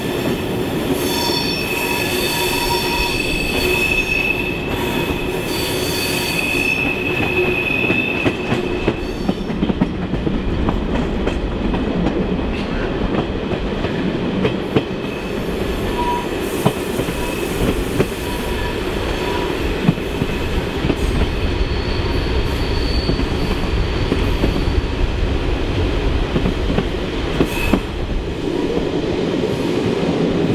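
Train wheels squealing against the rail on a curve, heard from an open coach window. A steady high squeal comes in the first nine seconds and returns briefly around 22 to 25 seconds in. Beneath it runs the train's rumble with scattered clicks of wheels over rail joints.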